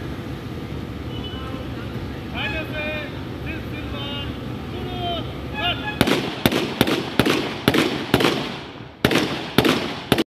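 A line of police firing blank rounds from rifles pointed skyward in a ceremonial salute. After about six seconds of steady outdoor background, a rapid, uneven ripple of sharp shots runs for about four seconds, several shots a second.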